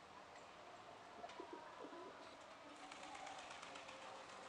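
Faint outdoor ambience with a few short, low bird calls about a second and a half in.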